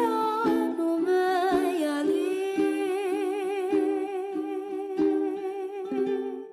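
Closing bars of a song: a voice hums, gliding at first, then holds one long wavering note with vibrato over soft accompaniment that keeps light, even strokes.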